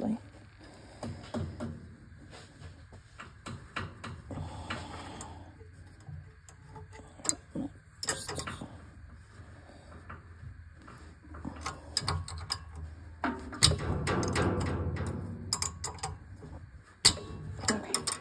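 Scattered metallic clicks and clinks of steel wrenches working the rocker-arm adjuster and lock nut on a Honda GX620 engine's valve train, while the valve clearance is being set, over a faint low hum.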